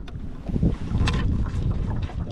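Wind buffeting the microphone as a low rumble that strengthens about half a second in, with a few short clicks from hands handling a baitcasting reel, the loudest just after one second.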